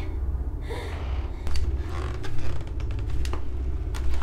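A low steady drone under a sick woman's heavy, gasping breaths, with a few light clicks and creaks about one and a half and three seconds in.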